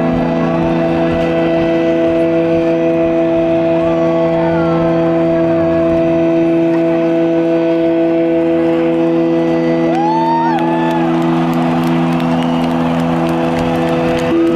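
A rock band's amplified chord held as a steady drone, several notes sustained without change. Over it, whistles rise and fall from the crowd, most about ten seconds in.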